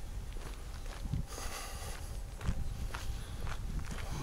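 Footsteps on a path, faint and irregular, over a low steady rumble.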